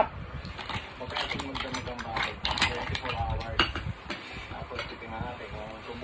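Metal fork clinking and scraping on a plate while eating, with a few sharp clinks about two and a half and three and a half seconds in.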